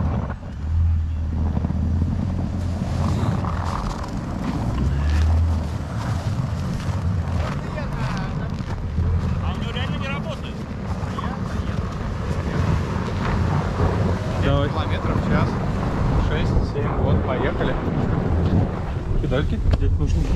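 Jeep Grand Cherokee WK2 engine running low and steady as the SUV drives slowly through snow, with wind buffeting the microphone.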